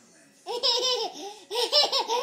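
Toddler boy laughing in a run of high-pitched, breathy bursts, starting about half a second in.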